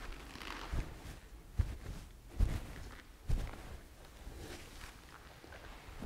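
Four soft, low thumps about 0.8 seconds apart in the first half, over quiet room tone.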